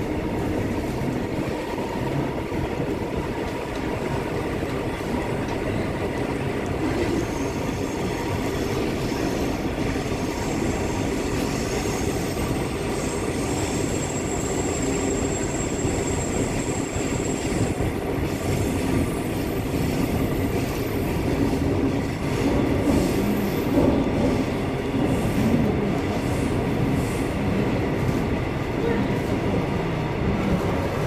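Seoul Metro Line 9 subway train running at speed, heard from inside the car: steady rumble of wheels on rail, with a thin high tone about midway and slightly louder running in the last third.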